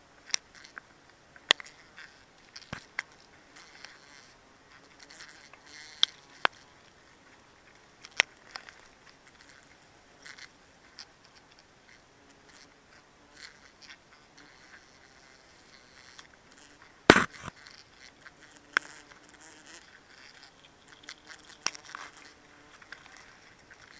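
Wild honeybees buzzing around an open comb, with scattered sharp clicks and taps close to the microphone and one louder knock about 17 seconds in.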